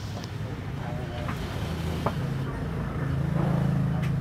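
A low droning hum that grows louder in the second half, under background voices, with a few light clicks.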